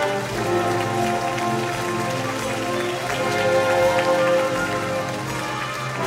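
A wind band plays a melodic passage, with clarinets and saxophones to the fore over brass and a noisy patter.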